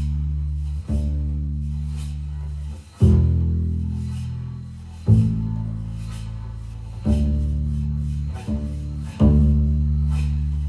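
Solo double bass with gut strings playing slow low notes. A new note starts sharply about every two seconds and rings on as it fades.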